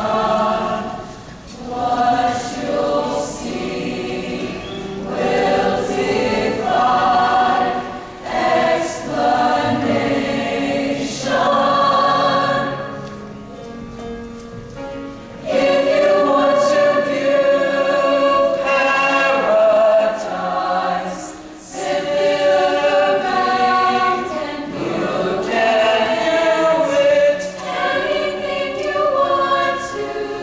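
A large mixed-voice show choir singing in harmony, phrase after phrase. There is a quieter passage about halfway through, then the full choir comes back in loudly.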